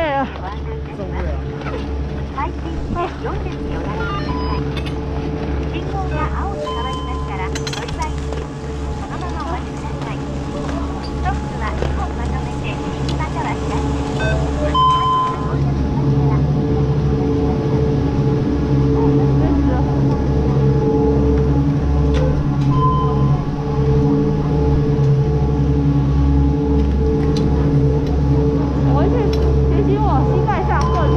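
Chairlift station drive machinery running with a steady low hum that grows louder as the loading area is reached. Short electronic beeps sound now and then, with occasional clicks and clatter.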